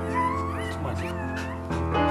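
Background music with sustained chords, over which a Staffordshire bull terrier in labour whines in a few short, wavering high-pitched calls during the first second or so, as a puppy is being delivered.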